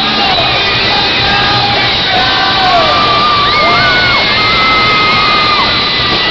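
Live rock band with drums and electric guitars playing loudly in an arena, with fans screaming and whooping over it in long, high held shrieks that bend and fall away.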